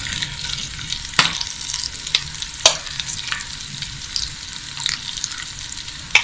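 Baby potatoes frying in oil in a pan, a steady sizzle with a few sharp clicks and crackles scattered through it.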